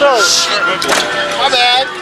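People's voices calling out: a falling exclamation at the start, followed by a short hiss, and a drawn-out call near the end.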